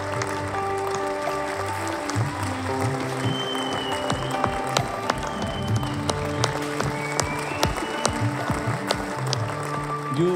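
An audience clapping steadily over background music with slow, held notes.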